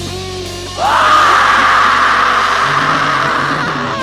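Live rock band: a wavering held note dies away, then about a second in a loud, rough scream rises in and is held for about three seconds over the band.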